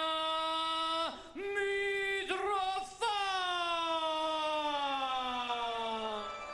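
Ring announcer's voice over a microphone, drawing out a fighter's surname in long held syllables; the last syllable is held for about three seconds and slowly falls in pitch.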